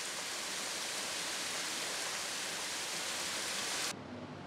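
Hot-spring water running and splashing, a steady, even hiss that cuts off suddenly near the end.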